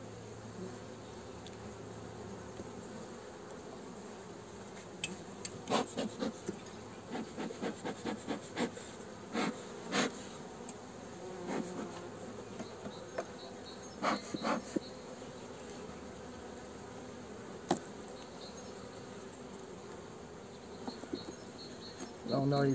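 Honeybees humming steadily over an open hive. Scattered sharp clicks and knocks come in the middle of the stretch, from wooden frames and a metal hive tool being handled in the hive body.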